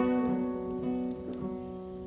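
Nylon-string classical guitar playing alone, a few plucked notes and chords ringing and fading.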